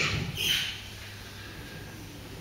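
A short high squeak sliding down in pitch about half a second in, then the quiet, even room tone of a lecture hall with a faint steady hum.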